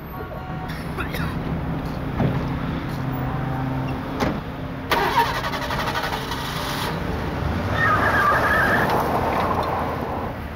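Car engine starting and running steadily, with a few sharp knocks like car doors shutting, and the engine getting louder in the second half as the car pulls away. A wavering higher sound comes in near the end.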